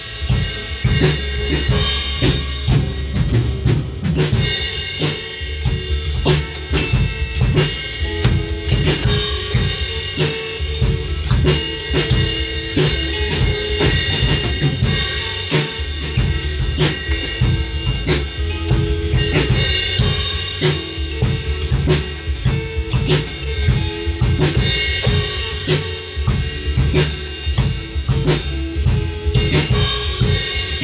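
Drum kit and electric guitar playing a song together: a steady beat on kick, snare and cymbals under sustained guitar notes and chords from an amplifier.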